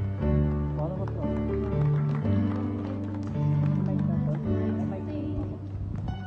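A woman singing a slow, tender song over plucked guitar accompaniment.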